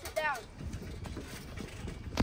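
A short voice call, then quiet outdoor background with faint scattered low knocks.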